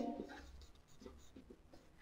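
Faint, scattered taps and scratches of a stylus on a pen tablet while a word is handwritten.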